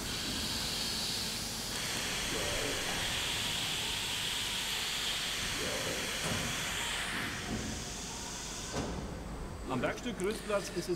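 Steady hiss from inside the HELLER HF 3500 5-axis machining centre while it carries out its pallet exchange, easing off a little near the end.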